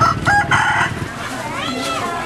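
A rooster crowing, loudest in the first second.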